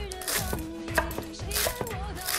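Kitchen knife chopping spring onions on a wooden cutting board in several quick strokes, over background music.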